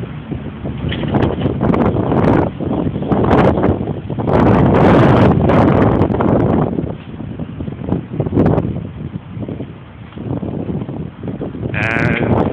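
Wind buffeting a phone's microphone on a moving bicycle, coming in uneven gusts and loudest about four to six seconds in.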